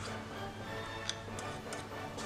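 A few faint, light ticks in the second half as a metal-nibbed dip pen is lifted from the paper and taken to the ink bottle, over a low steady hum.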